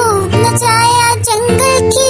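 Music: a high, child-like voice singing a Hindi nursery rhyme over a backing track, the melody moving between held notes with short glides.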